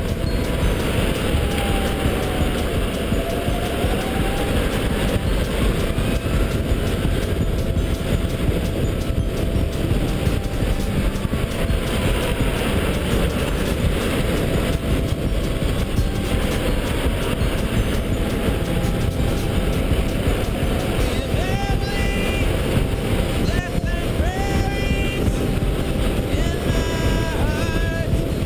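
DeWalt 84V electric go-kart at speed: a steady rush of wind on the helmet-mounted camera's microphone and tyre noise, with a faint electric motor whine that falls and rises in pitch with the throttle, climbing several times near the end as the kart accelerates out of corners.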